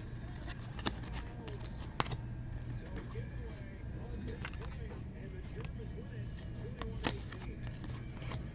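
Trading cards being handled and flipped through by hand, with a few sharp clicks as cards are snapped or slid against each other, over a low steady hum and faint distant talk.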